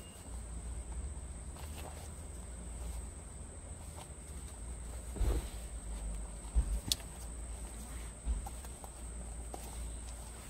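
Soft rustling and rubbing of a satin pointe shoe's fabric as a needle with elastic drawstring is worked through its casing, with a few light knocks from handling. A steady low rumble runs underneath.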